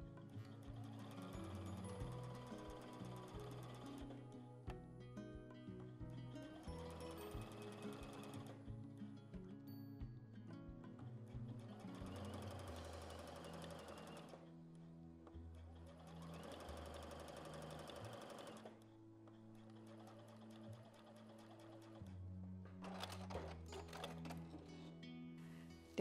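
Domestic sewing machine stitching a jersey hem in several runs of a few seconds each, with pauses between them, over background music.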